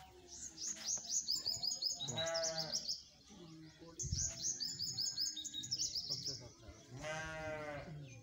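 A goat bleats twice, about two seconds in and again near the end, each call short and quavering. Small birds chirp in a busy high chatter around it.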